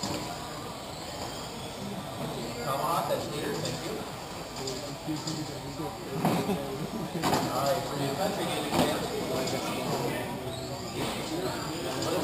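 Race-hall noise from 1/10-scale electric RC touring cars lapping an indoor carpet track: their high motor whines rise and fall as they pass, over indistinct background chatter. A few sharp knocks come about six to nine seconds in.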